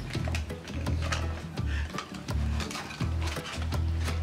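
Irregular clicks and rattling of plastic toy pieces and cardboard packaging being handled and pulled loose, over background music.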